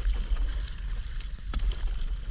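Kayak paddle strokes splashing and water slapping against an inflatable kayak, over a steady low rumble of wind on the microphone; a sharper splash comes about three-quarters of the way through.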